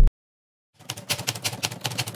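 Typing sound effect: a fast run of key clicks starting a little under a second in, after a short silence.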